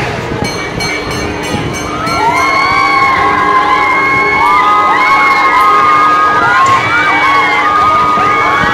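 Riders on a Tornado swinging-gondola thrill ride screaming together as it swings them up, many overlapping high screams starting about two seconds in and growing louder.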